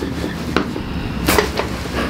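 A chiropractic neck adjustment with the head held in both hands gives only a couple of light clicks and handling sounds, not loud joint cracks: the neck muscles are still guarding and resisting the adjustment.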